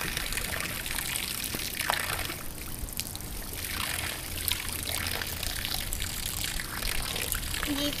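Stream of water from a garden hose pouring steadily and splashing onto the water's surface.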